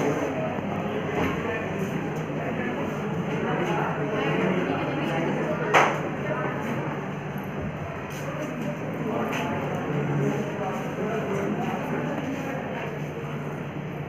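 Indistinct chatter of many children's voices filling a crowded classroom, with a sharp knock about six seconds in and a fainter click a few seconds later.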